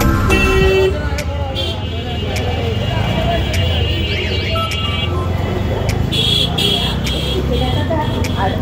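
Ride inside an auto-rickshaw in busy street traffic: the auto's engine runs with a steady low rumble under street noise and voices, and horns toot several times in the second half.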